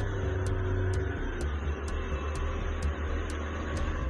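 Motorboat engine running steadily at speed, a constant low hum under the rushing wash of water from the boat's wake.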